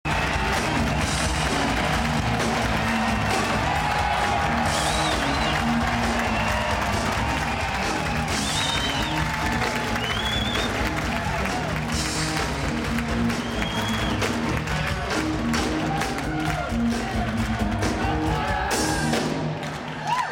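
Live electric blues band playing: electric guitar over electric bass and drum kit, with high guitar notes bending upward about five, eight and a half and ten seconds in. The band stops just at the end.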